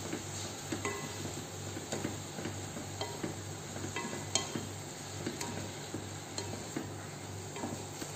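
Wooden spatula stirring vegetables frying in a pot on a gas stove, with sizzling and frequent small irregular knocks and scrapes of the spatula against the pot.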